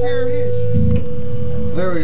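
Steady electrical hum from stage amplifiers and PA between songs, with a held tone over it and a low drone that gets louder about three-quarters of a second in; voices talk over it near the start and near the end.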